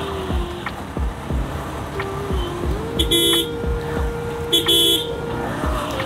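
Single-cylinder Suzuki Gixxer motorcycle engine running at road speed, its pitch rising slightly a little before the middle. Two short horn toots come about a second and a half apart.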